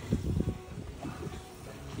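Wind buffeting a phone's microphone on an open boat: an uneven low rumble, strongest in the first half second, then fainter.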